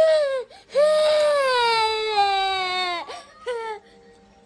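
Toddler crying: a short cry, then one long wail of about two seconds that slowly falls in pitch, ending in a couple of brief sobs.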